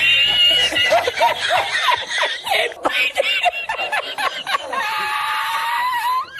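High-pitched laughter after the punchline of a joke. It opens with a long held squeal, runs into a series of short laughs, and ends with another long drawn-out squeal near the end.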